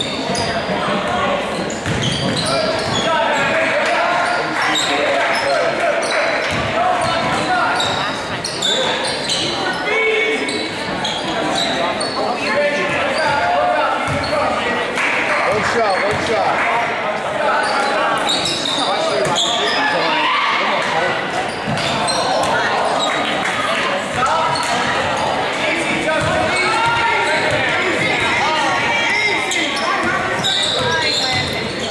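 Basketball game in a gymnasium: a ball being dribbled on a hardwood floor amid many voices of players, coaches and spectators calling and shouting, all echoing in the large hall.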